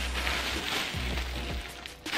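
Paper stuffing rustling and crinkling as a hand digs around inside a new leather handbag, over soft background music.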